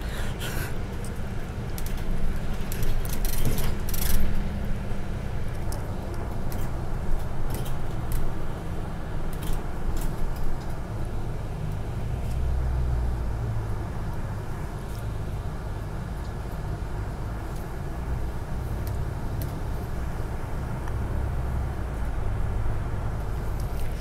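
Cabin sound of a moving Transperth city bus heard from the front seat: a steady low engine and road rumble, with scattered small rattles and clicks from the interior fittings.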